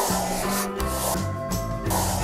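Background music, with a felt-tip marker rubbing across paper as it draws lines.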